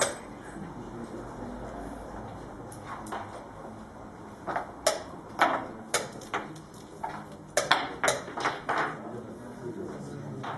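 Chess pieces set down on a wooden board and chess-clock buttons struck in fast blitz play: a few sharp knocks, then a quick flurry of about ten clicks and clacks from about halfway in until near the end.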